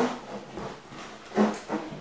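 A brief low vocal sound from the woman about one and a half seconds in, over faint rustling as she bends down.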